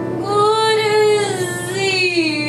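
A woman singing solo into a microphone, holding one long note with a slight waver, then shifting to a new pitch near the end.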